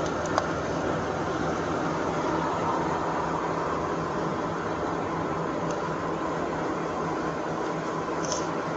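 Steady hum and fan-like rush of a patrol SUV, its engine idling with the blower running, heard by a body-worn camera at the open rear door. A single short click comes just after the start.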